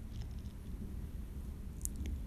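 Quiet room tone with a steady low hum and one small click near the end.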